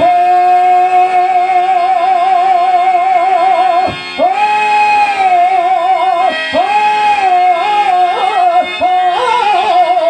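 A male voice singing a Telugu stage verse (padyam) through a microphone: one long high note with vibrato held for about four seconds, then shorter phrases with ornamented turns. A harmonium holds a steady drone underneath.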